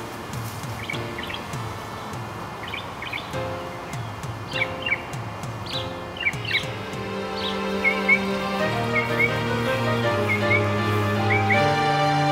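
Birds chirping in short, rising calls that come in pairs about once a second, over a background music track. The music starts as a soft plucked pulse and swells into held chords from about halfway through, becoming the loudest sound.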